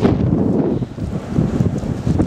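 Strong blizzard wind buffeting the microphone: a loud, gusting low rumble that eases briefly about a second in.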